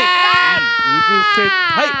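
A man shouting a long, drawn-out "konnichiwa", holding the last syllable in a strained, high voice that slowly falls in pitch and breaks off near the end.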